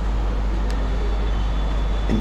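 Steady low rumble and hiss of background noise, with one faint click about two-thirds of a second in.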